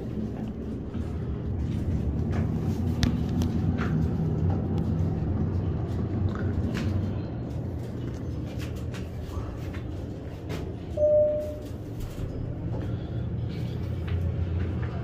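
Schindler hydraulic elevator car travelling: a steady low hum from its hydraulic machinery, easing a little past the middle and picking up again. A short single tone sounds near the end.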